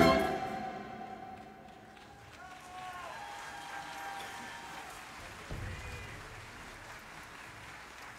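A symphony orchestra's string-led final chord fades away in the first second. Faint audience applause and scattered cheers follow.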